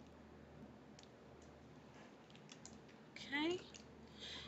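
A few faint clicks and taps of small plastic makeup items being handled, about a second in and again a few times between two and three seconds.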